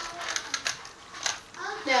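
Plastic 3x3 Rubik's cube being twisted quickly by hand, its layers snapping round in a few sharp, irregular clicks.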